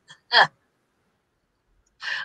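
A woman's single brief vocal sound, falling in pitch like the tail of a short laugh, about a third of a second in, heard over a video-call line that otherwise drops to dead silence.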